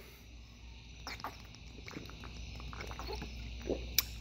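A man taking a sip of beer from a glass bottle: faint gulps and swallows, with a short click at the very end.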